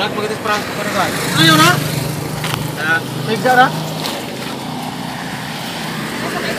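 People's voices and a laugh, in short bursts, with a low background hum.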